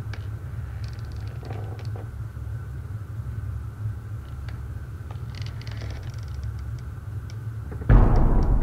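Low, steady rumbling drone of a dark ambient song intro, with scattered faint clicks and crackles and a faint high steady tone over it. A loud sudden onset comes in right at the very end.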